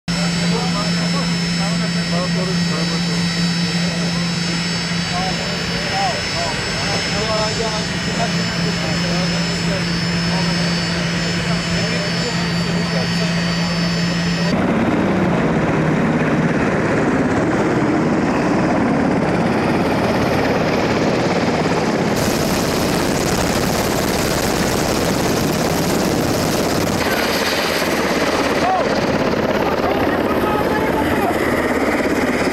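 A parked jet aircraft's engines running with a steady high whine of several tones over a low hum, with murmured greeting voices. About halfway through it cuts abruptly to a steady rushing noise without the tones.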